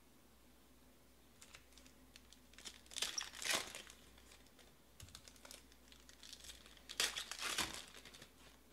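Foil trading-card pack wrappers crinkling as they are torn open by hand, in two loud bursts about four seconds apart, with light ticks and rustles between them.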